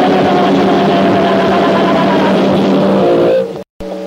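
Loud distorted electric guitar and bass from a thrash band's demo, a noisy held chord over a steady low note. It breaks off about three and a half seconds in with a brief total dropout, and quieter guitar picks up near the end.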